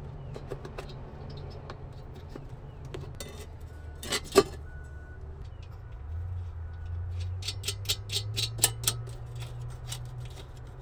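Light metallic clicks and taps of a steel mounting plate and its bolts being handled and fitted by hand onto a diesel heater's casing, with a sharper click about four seconds in and a quick run of clicks near the end, over a low steady hum.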